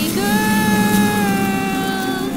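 Cartoon background score: one long, slightly falling high note held over a steady low drone, ending near the end.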